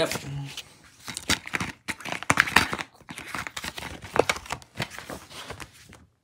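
A plastic DVD case and its paper insert being handled. The paper rustles and crinkles, and the case gives irregular clicks and knocks.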